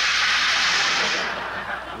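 Radio studio sound effect of rain: a steady hiss that fades away about a second and a half in.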